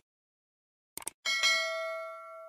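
Subscribe-button animation sound effects: a short mouse click about a second in, then a bright notification-bell ding that rings on and fades away.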